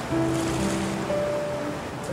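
Sea waves washing and breaking, under soft background music of long held notes.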